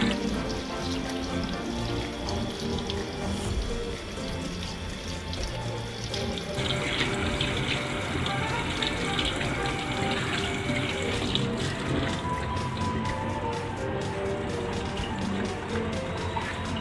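Tap water running into a stainless steel sink as hands are rubbed and rinsed under the stream, with background music throughout.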